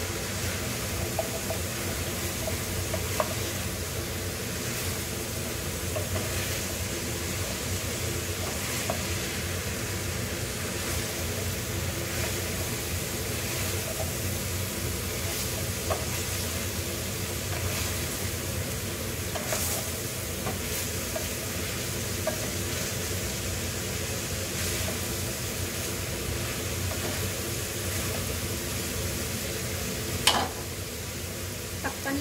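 Sliced bitter melon and ground beef sizzling steadily in a frying pan, with scattered light scrapes and taps of a wooden spatula stirring them.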